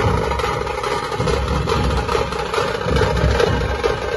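Dhol-tasha ensemble playing: large dhol barrel drums beaten in a dense, continuous rhythm, layered with the sharp rattle of tasha drums and clashing cymbals.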